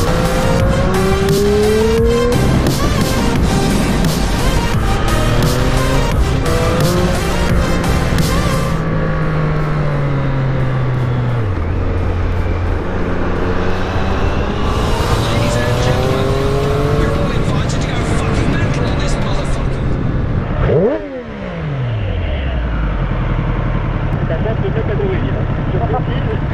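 Triumph Street Triple 765 RS inline-three engine accelerating hard, its pitch climbing and dropping with each upshift, then falling away as the bike slows, with background music over it. Past the three-quarter mark the sound dips briefly and a steep falling sweep follows.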